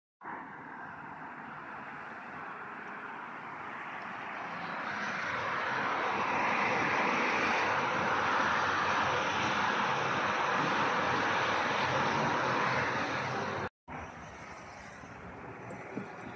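Traffic on a multi-lane highway heard from a high balcony: a steady rushing that swells about five seconds in, then cuts off abruptly near the end.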